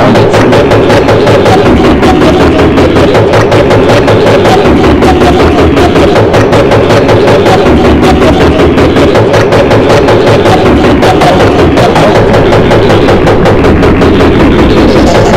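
Loud, dense YTPMV remix music with a fast, driving beat, built from chopped and repeated sound samples, at a steady full level throughout.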